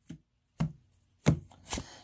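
Deck of oracle cards being handled and cut by hand over a wooden table: four short, sharp taps spread across two seconds.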